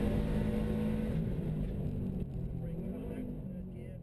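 Engine and road noise heard from inside the cabin of a Subaru WRX STI, a steady hum that fades out gradually.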